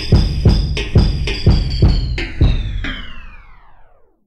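Hip hop drum beat with heavy kick and snare hits, about three a second. From about halfway through the whole beat slides down in pitch and slows as it winds down, fading out and stopping at the very end.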